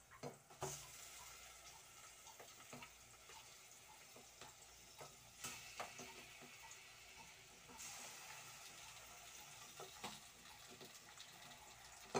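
Faint, steady sizzling of chicken wings frying in hot oil with sautéed onion, garlic and ginger in an aluminium pot, stronger for a couple of seconds in the middle. Scattered sharp clicks of a metal spoon against the plastic container and pot run through it.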